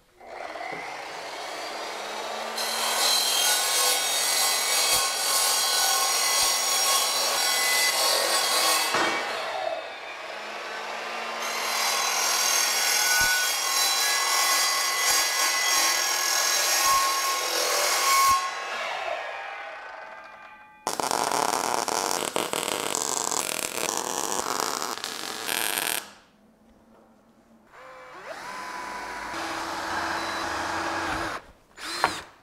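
Evolution mitre saw cutting steel square tubing: two long cuts of several seconds each, the blade ringing with high tones as it goes through the metal. A shorter, harsher stretch of cutting noise follows, and near the end a drill starts running.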